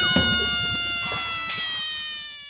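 Outro sound effect: one long, meow-like tone that slides slowly down in pitch and fades away.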